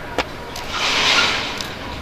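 A vehicle passing along the street: a smooth swell of road noise that builds about half a second in, peaks around a second and fades away. A short click comes just before it.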